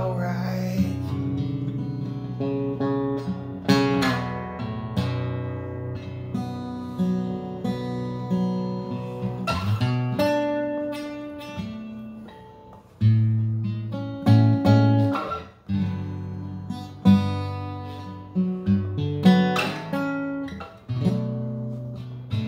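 Acoustic guitar played solo in an instrumental break, strummed chords and picked notes with sharp accented strums at irregular points. It thins out briefly about twelve seconds in, then firm strums return.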